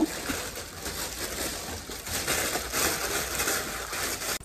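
Clear plastic packaging bag crinkling and rustling as it is handled, with irregular soft crackles.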